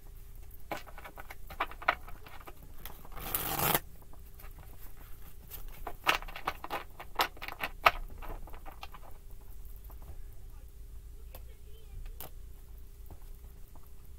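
A deck of tarot cards being shuffled by hand: clusters of quick card flicks and slaps, with one louder rushing burst about three seconds in and only a few single clicks in the last few seconds.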